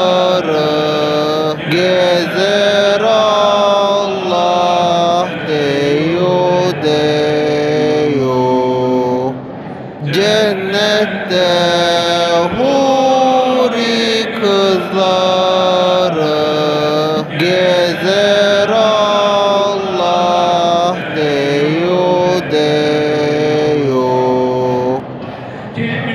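Turkish Islamic hymn (ilahi) with zikr: voices chant long, held melodic phrases over a steady low drone. There is a short break in the phrasing about ten seconds in.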